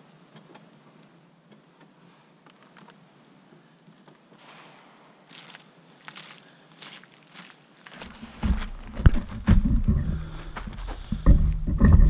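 Blocks of ballistic gelatin being pushed and set end to end on a wooden plank on a plastic folding table: soft scrapes and light clicks, with footsteps on gravel. From about eight seconds in come louder knocks and a low rumble, with one sharp knock about a second later.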